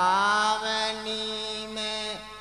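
A singer in a Bundeli Diwari folk song holds one long sung note, sliding up slightly at the start and then held steady, with the percussion dropped out beneath it.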